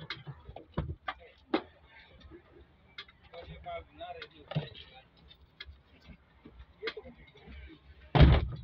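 Scattered light clicks and knocks, irregular and about one or two a second, from handling around a stripped-out pickup dashboard frame. A faint voice comes in a little before the middle.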